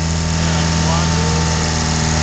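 A diesel or vehicle engine idling with a steady low hum, with faint voices over it.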